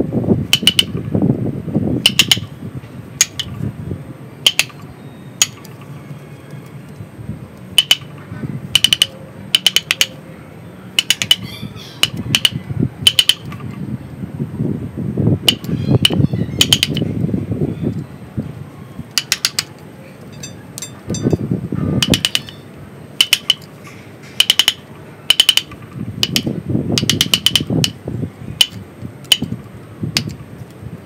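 Wooden mallet striking a steel chisel cutting into the trunk wood of a mini banyan (ficus) bonsai: sharp taps about once a second, irregularly spaced and sometimes in quick pairs.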